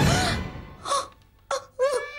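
A woman sobbing, with short wailing cries and gasps about a second in and twice near the end, after background music dies away at the start.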